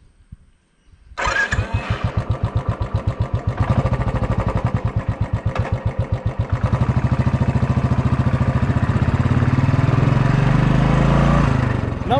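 Royal Enfield Classic 350 BS3 single-cylinder engine starting about a second in and thumping with slow, even beats. From about 4 s it beats faster and louder, then runs as a steadier, fuller drone under way in the second half.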